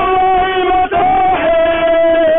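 Voices singing a chant in long held notes, with a brief break about a second in.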